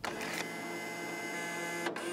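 A steady, machine-like whirring sound effect with a short break near the end.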